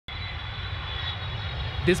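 Twin-engine jet airliner climbing out after takeoff: a steady low engine rumble with a thin high whine over it. A voice begins right at the end.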